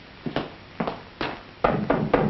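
Knocking on a wooden door: a few single knocks spaced about half a second apart, then three quicker, louder raps near the end.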